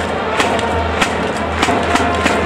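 Japanese pro-baseball cheering-section music: trumpets playing a fight-song melody over drum beats, about two beats a second, carried through the stadium.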